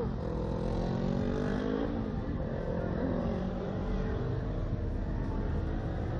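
Steady wind noise rushing over the microphone of a camera mounted on a swinging Slingshot ride capsule, with a low rumble and a faint hum beneath it.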